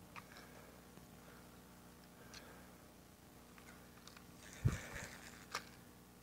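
Faint scattered clicks and ticks of a spincast rod and reel being handled while a hooked fish is brought in, with a thump late on followed by a sharp click.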